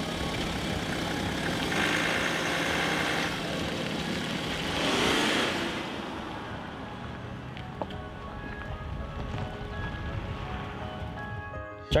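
Quiet background music over the noise of a car driving by, swelling to a peak about five seconds in and then fading away.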